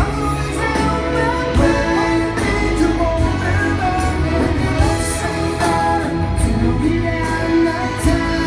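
Live pop-rock band backed by a full orchestra playing a ballad, with a lead voice singing over it. Heard from the audience in a large amphitheatre.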